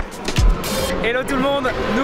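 A music track's kick-drum beat that stops about half a second in, giving way to steady engine noise from racing motorcycles, with a man's voice starting about a second in.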